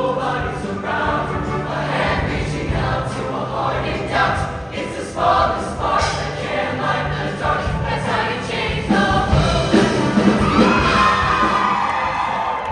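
Show choir of mixed voices singing a pop-style number over amplified instrumental accompaniment, with a steady bass line underneath. It grows louder about nine seconds in and ends on a loud held chord.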